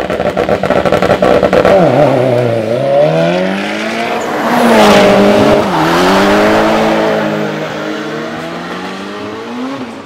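Drag race car engine at full throttle: a rapid popping stutter at first, then accelerating hard with the pitch climbing and dropping sharply twice at gear changes, easing off near the end.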